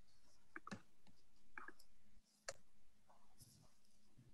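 Near silence broken by a few faint, sharp clicks spaced irregularly, the most distinct about two and a half seconds in.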